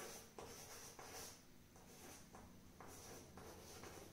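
Chalk scratching faintly on a chalkboard as words are written, in a series of short strokes.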